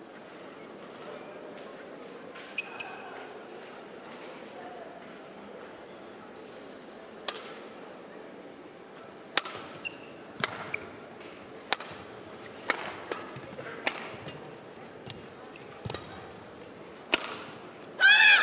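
Badminton rally in an indoor arena: the shuttlecock is struck by the rackets about once a second, sharp cracks starting about 7 seconds in, with a few short squeaks of shoes on the court floor over steady hall ambience.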